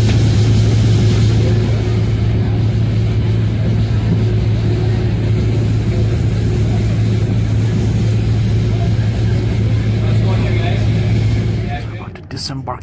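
A tour boat's engine running steadily under way, a low drone with the rush of water and hull noise, heard from inside the cabin. It cuts off suddenly just before the end.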